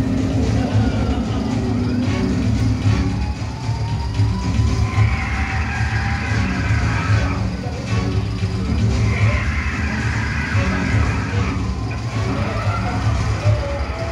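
A film soundtrack played loud over open-air screening loudspeakers: background music mixed with vehicle engine sounds from the on-screen action.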